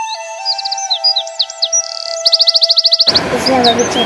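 Background music of held, softly stepping tones with bird chirps and fast twittering trills laid over it. About three seconds in, a louder, noisier sound with a voice cuts in.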